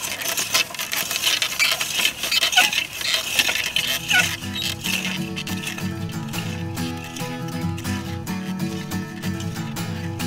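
A wheel hoe's blades scraping and crackling through soil and dry leaf litter in quick uneven strokes. About halfway through, acoustic country-style music with guitar comes in and carries on.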